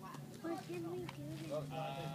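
A young child's high voice, sliding up and down in pitch for about a second, over a low steady hum.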